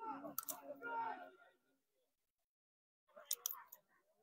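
Quiet speech: a voice talks softly for about a second and a half, pauses, then says a few more words with sharp hissing consonants near the end.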